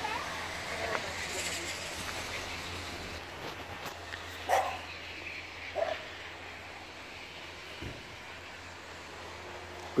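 Quiet outdoor background noise with a steady low hum, broken near the middle by two short distant calls about a second apart.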